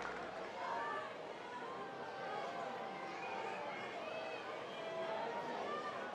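Low crowd murmur in a stadium: scattered distant voices and calls over a steady hiss, while the crowd waits for a penalty kick.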